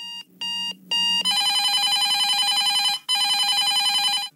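Electronic alarm sound effect: three short beeps, then a rapid trilling ring in two long bursts with a brief break about three seconds in, like a timer going off.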